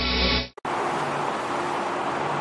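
Intro music that cuts off suddenly about half a second in, followed by a steady outdoor background hiss.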